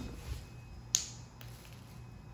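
A single sharp plastic click about a second in, followed by a fainter tick, from small plastic action figures and the phone being handled.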